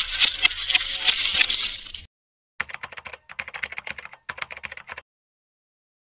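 Rapid clicking sound effect like keyboard typing, part of a TV channel's logo animation: a dense run of clicks for about two seconds, a short silent gap, then a sparser, quieter run of clicks for about two and a half seconds before it cuts to silence.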